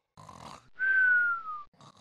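Cartoon snoring sound effect: a short rasping breath in, then a longer breath out with a thin whistle that slides down in pitch.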